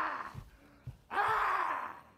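Two breathy, drawn-out vocal groans from a person, each about a second long, the second starting about a second in.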